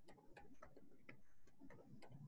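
Near silence with faint, irregular light clicks, a few a second.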